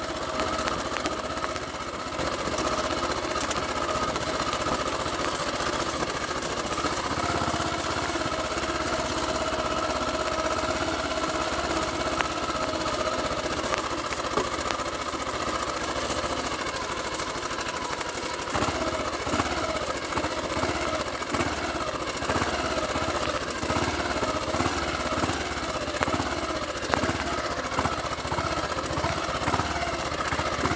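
Royal Enfield single-cylinder motorcycle engine running under way, with wind noise on the microphone. The engine note holds steady at first, then wavers up and down over the last third as the speed varies.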